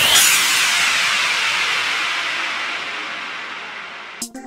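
Synthesized white-noise wash in a deep house track: the beat drops out and the hiss swells at once, then fades slowly and steadily as the track ends.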